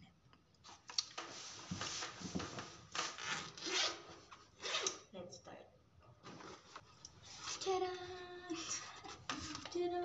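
Rustling and scraping of things being handled and pulled out of a fabric backpack, in short noisy bursts through the first half. Near the end a soft voice comes in with a few held tones.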